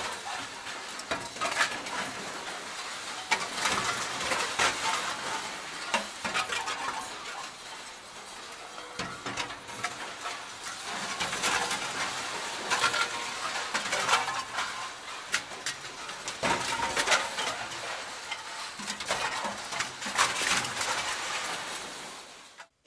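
Metal hardware and tools clinking and knocking again and again as table-saw parts are handled and fitted, over a steady hiss.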